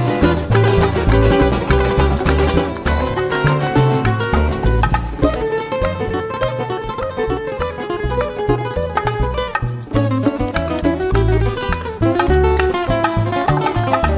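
Live Cuban son band playing an instrumental passage without vocals: a bright plucked-string lead on the Cuban tres over a repeating upright-bass line and hand percussion.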